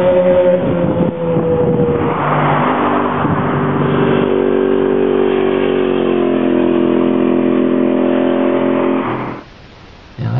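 Sport-bike engines riding past on the street: a 2008 Kawasaki ZX-6R inline-four with an aftermarket MotorWorks exhaust, and a 2008 Ducati 848 V-twin with a full titanium Remus exhaust. The engine note drops in pitch over the first two seconds, then holds fairly steady with a slight dip and cuts off about nine seconds in.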